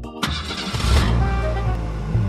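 Car engine starting: a sudden burst as it fires just after the start, then settling into steady running, with background music over it.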